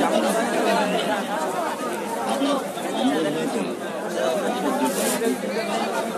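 Crowd chatter: many people talking at once, a dense babble of overlapping voices with no single speaker standing out.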